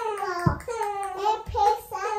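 A two-month-old baby vocalizing in a run of long, drawn-out, high-pitched sounds, with two brief low thumps about half a second and a second and a half in.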